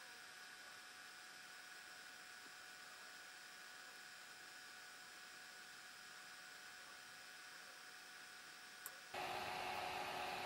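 Near silence: a faint steady hiss of room tone, which steps up to a louder steady hiss about nine seconds in.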